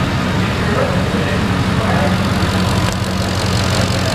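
2005 Ford F-150's 5.4-litre Triton V8 idling steadily.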